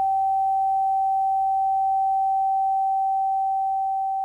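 Heart-monitor flatline tone used as a sound effect: one steady, unbroken high beep, easing off slightly near the end.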